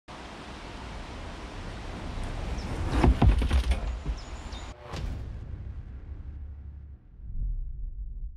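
Mountain bike clattering on wooden stairs: a cluster of loud knocks and thuds about three seconds in and another knock near the middle, over a steady rushing of wind on the microphone.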